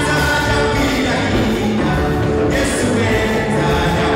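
A choir singing a lively gospel song over instrumental backing, continuous and loud.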